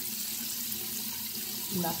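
Tap water running steadily into a bathroom sink.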